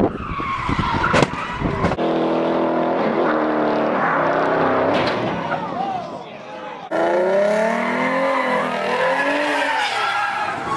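Cars accelerating hard in a run of amateur street clips: engines revving and tyres squealing. The sound cuts abruptly to a new clip about two seconds in and again about seven seconds in, and the engine pitch swings up and down near the end.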